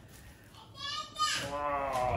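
A child's voice calling out in one long, high-pitched call that starts about two-thirds of a second in and drops in pitch partway through.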